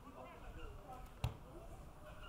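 A single sharp thump of an Australian rules football being kicked, a little over a second in.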